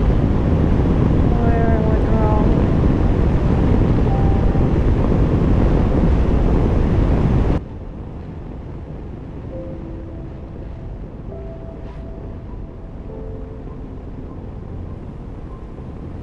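Wind buffeting the microphone of a camera on a moving motorcycle, a loud, dense rush mixed with engine and road noise. It cuts off abruptly about halfway through, leaving a much quieter passage with soft, sparse background music notes.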